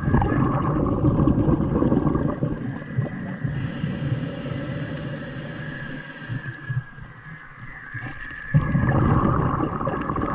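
Underwater noise heard through the camera housing: a rushing, bubbling surge of water for the first three seconds or so, a quieter stretch, then a second surge near the end, over a faint steady high whine.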